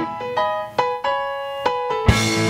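An electric keyboard with a piano sound playing a short phrase of about four sustained notes on its own, with no drums or bass underneath.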